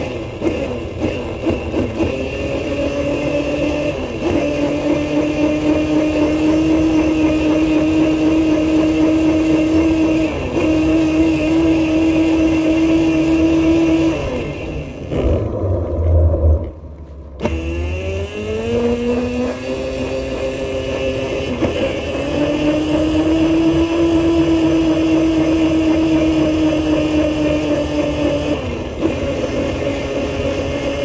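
Motor of a small ride-on vehicle running with a steady whine. It stops briefly about halfway through, then picks up again with a rising whine as the vehicle speeds up.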